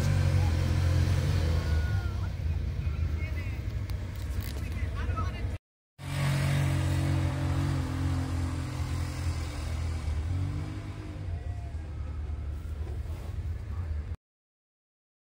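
Engine of an off-road side-by-side running at low trail speed, a steady low rumble heard from the cab. The sound drops out completely for about half a second near the middle, then carries on as before.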